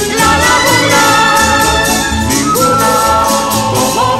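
A Spanish tuna (student band) song: voices singing together in long held notes over strummed guitars and a steady bass beat, about two beats a second.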